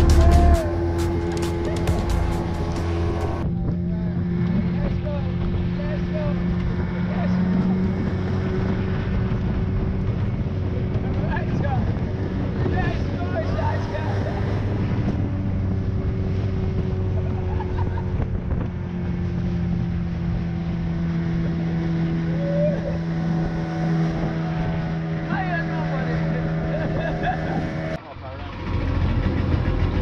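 Outboard motor of a small open skiff running at speed: a steady drone with rushing wind and water, and voices and laughter over it. Music plays for the first few seconds, and the drone ends abruptly near the end.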